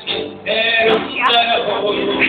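A man singing a song with music behind him, holding notes after a brief dip at the start.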